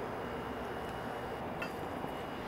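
Steady whoosh of small circulation fans running in a grow tent, with one faint click about a second and a half in.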